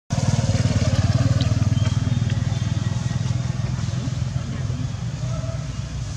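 A small motorcycle's engine running as it rides past, a steady low hum that is loudest at first and slowly fades.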